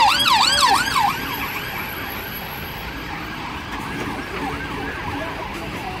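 Police car siren on a fast yelp, its pitch sweeping up and down about four times a second. It is loud for about the first second, then carries on fainter as the car moves off.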